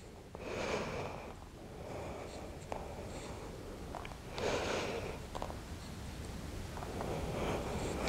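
A woman's slow breathing heard close on a clip-on microphone: three soft breaths, one near the start, one about four and a half seconds in and a fainter one near the end, with a few small clicks and rustles from her moving on the mat.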